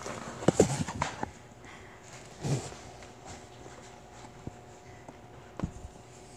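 A few soft thumps and knocks of feet and hands against a wall and floor during a handstand against the wall: a quick cluster about half a second to a second in, one more about two and a half seconds in, and a last one near the end.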